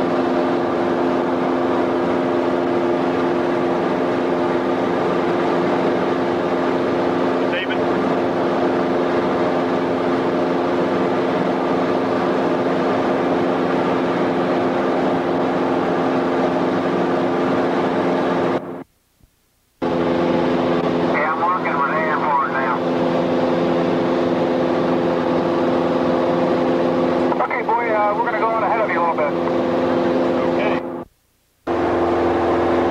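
Steady drone of a light aircraft's piston engine and propeller, heard from inside the cabin, with a strong even hum of several fixed pitches. The sound cuts out completely for about a second roughly two-thirds of the way through, then comes straight back.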